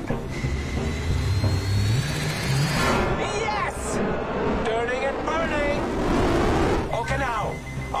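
Film soundtrack of a fighter jet's engine being restarted in flight: a low rumble with a thin whine rising in pitch over the first few seconds as the engine spools up. From about three seconds in, dramatic music with voice-like sounds takes over.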